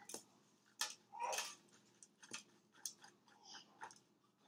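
Faint, irregular scratches, clicks and paper crinkles as a thin tool scrapes dried copper out of a folded filter paper into a plastic weighing boat, with a longer crinkle a little over a second in.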